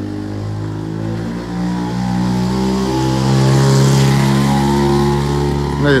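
Small motorcycle engine running and accelerating, its pitch stepping up twice, loudest a little past the middle.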